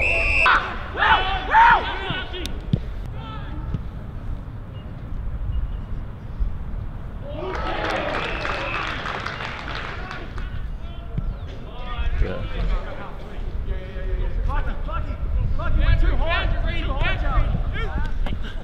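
Voices of players and spectators calling out across an open football ground, with a low wind rumble on the microphone and a brief wash of noise about halfway through.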